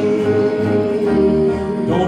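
Live gospel song: voices holding a long note over guitar accompaniment.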